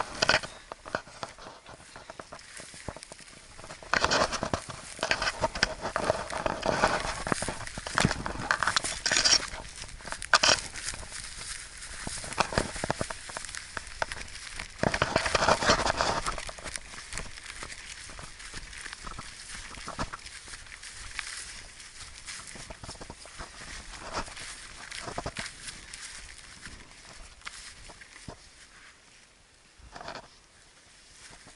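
Rustling and crackling of tall grass brushing against a handheld camera as it is carried through, with clicks and knocks from handling. The sound comes in busy bursts about 4, 9 and 15 seconds in and is quieter near the end.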